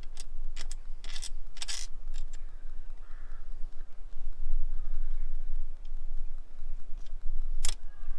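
Small sharp clicks and taps of a small self-tapping screw being handled and set by hand into an awning rail, several in the first two seconds and one louder click near the end, over a low steady rumble.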